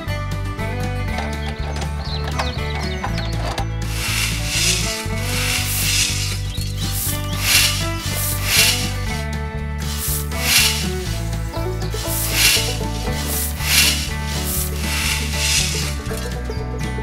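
A small hand tool scraping and digging into sand in a series of short strokes from about four seconds in, over background music with a steady bass line.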